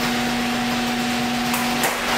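A steady machine hum with two pitches, low and higher, over a broad hiss, with two light clicks near the end.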